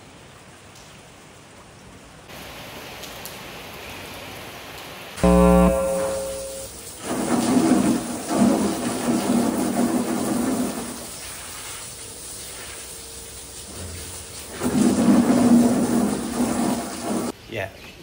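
Steady rain falling, then water from a garden hose spraying in two long bursts while rabbit boxes are washed on a concrete floor. A short, loud hum about five seconds in comes before the spraying.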